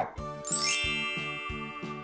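A bright, twinkling sparkle chime sound effect: a shimmering cascade of high tones that sweeps downward about half a second in, then rings and fades. Light background music with a steady beat plays underneath.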